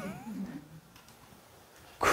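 A brief, faint pitched call in the first half second, then near silence with room tone.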